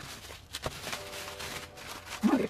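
Faint rustling and crinkling of bubble wrap and plastic card sleeves being handled, with a light click a little after half a second in.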